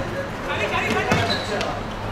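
A football being kicked and bouncing on a hard court, a few sharp knocks, with players' voices calling out.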